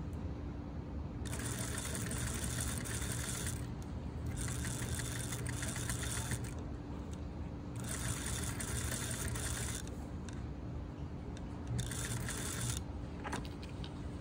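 Industrial sewing machine stitching through layered denim in four runs of one to two seconds each, with short pauses between as the fabric is guided, over a steady low hum.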